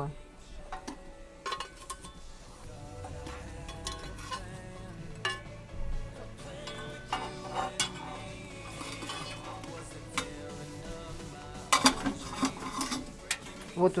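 Metal tongs clinking and scraping against a metal coal scoop and the top of a Tula samovar as coals are dropped into its central fire tube, in scattered knocks with a quick run of clinks near the end.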